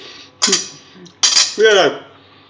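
Metal fork and knife set down on a ceramic plate, clinking twice, about half a second in and again just past a second. A short vocal sound comes near the end.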